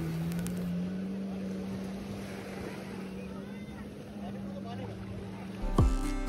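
Steady drone of a watercraft engine out on the water, its pitch rising slightly in the first second and then holding, over the wash of small waves on the sand. Guitar music comes in near the end.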